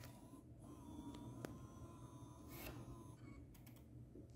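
Near silence: faint room tone with a thin steady whine that stops about three seconds in, and a couple of faint clicks.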